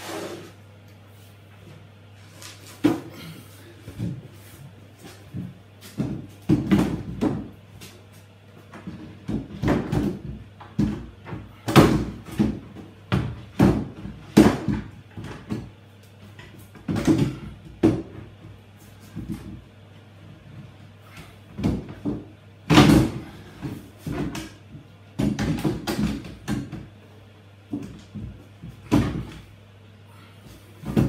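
White kitchen wall cabinet knocking and bumping against the wall as it is lifted and worked onto its hanging brackets: a long run of irregular knocks and thumps.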